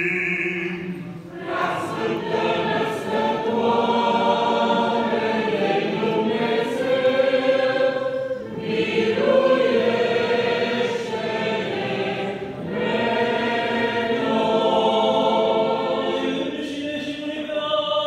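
Church choir singing an Orthodox liturgical chant in several voices, in long held phrases with brief pauses between them.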